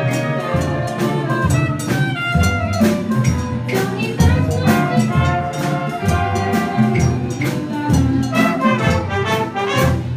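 Jazz band music with a brass section of trumpets and trombones playing over a steady drum beat.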